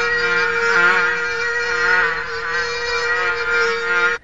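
Cartoon mosquito buzzing: a steady, high whine with a slightly wavering pitch, from several insects hovering close. It cuts off suddenly just after the end.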